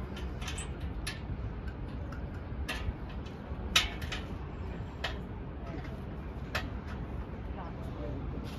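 Low wind rumble on the microphone with faint voices of people around, broken by about half a dozen sharp clicks, the loudest near the middle.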